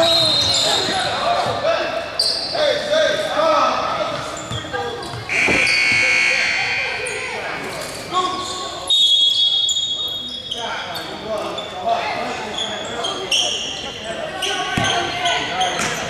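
A basketball game in a gym: players' and spectators' voices echoing in the hall, with a basketball bouncing on the hardwood floor. About nine seconds in, a steady high tone sounds for about a second and a half.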